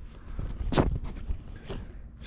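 Footsteps through shallow flood water and wet grass: one sharp step about three-quarters of a second in, a few fainter ones after, over a low rumble.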